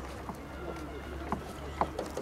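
Faint voices talking in the background, with two sharp knocks, one about halfway through and one near the end, over a low steady rumble.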